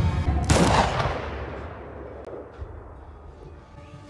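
A single gunshot about half a second in, its echo dying away over a second or so, over low film score.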